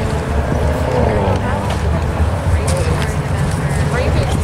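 C7 Corvette's V8 running with a low, steady exhaust rumble through its quad centre pipes as the car rolls slowly away, with no sharp revving.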